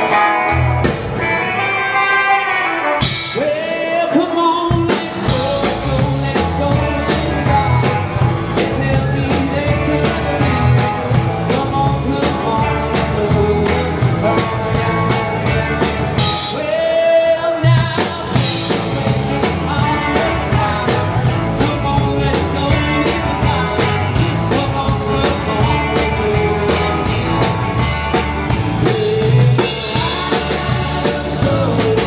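Live rock band playing, heard from beside the drum kit: a steady drum-kit beat with electric guitar and a singer. The drums drop out briefly about three seconds in and again about seventeen seconds in.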